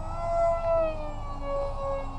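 Electric motor and propeller of a HobbyKing Sonic FX RC flying wing whining in flight. The pitch rises a little, then drops and holds lower just under a second in as the throttle changes.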